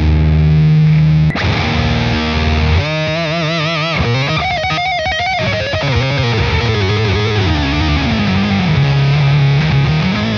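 Electric guitar played through the Redbeard Effects Honey Badger octave fuzz pedal, a heavily distorted tone with a lower octave mixed in and a synth-like quality. A held note cuts off with a sharp click about a second in; then the notes warble widely in pitch and slide downward near the end.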